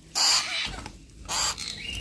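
Baby plum-headed parakeet giving short, rasping food-begging calls, about a second apart, during hand-feeding.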